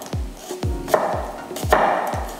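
Chef's knife slicing an onion into thin strips on a wooden cutting board, the blade tapping the board with each cut, over background music with a steady beat.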